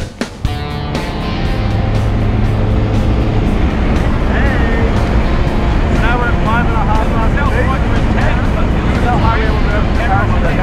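Steady engine and air noise heard inside the cabin of a skydiving plane in flight. Voices come over it from about four seconds in. Guitar music cuts off at the very start.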